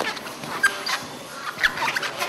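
Grapplers' bodies scuffing and thudding on a foam training mat, with two sharp thumps about a second apart and short high squeaks in between.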